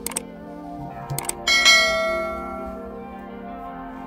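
Subscribe-button sound effect: a few quick mouse clicks, then a bright bell chime about a second and a half in that rings out and fades, over soft background music.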